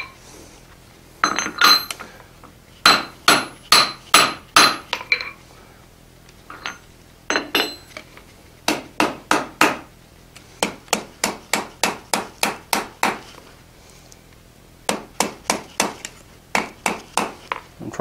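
Hand hammer striking a red-hot iron bar on an anvil in groups of quick blows separated by short pauses, with a steady run of about three blows a second in the middle; some blows ring from the steel. The smith is rounding up the corners of the forge-welded snub end of a scroll.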